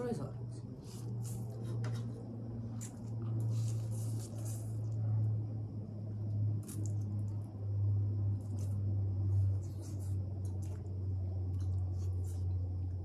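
Two people slurping and chewing instant noodles: a run of short, wet slurps and mouth noises, over a steady low hum.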